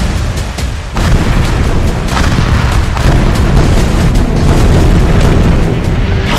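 Deep booms over dramatic background music: a heavy boom comes in about a second in and further booming hits follow.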